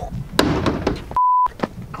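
A plastic portable toilet door is pulled open with a sharp clack and a short rattle. About a second in, a steady high censor bleep lasting about a quarter second blots out a swear word.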